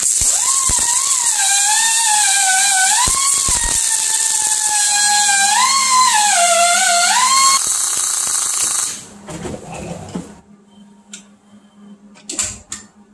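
MIG welder laying a bead on stainless steel: a steady, loud, crackling hiss of the arc for about nine seconds, with a whine that rises and falls in pitch over it, ending suddenly when the weld stops.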